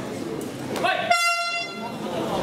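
A horn sounds once, a steady high tone lasting just under a second, signalling the start of the round, over crowd chatter in the hall.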